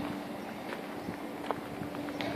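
Footsteps crunching on loose gravel, a few scattered steps, over a faint steady hum.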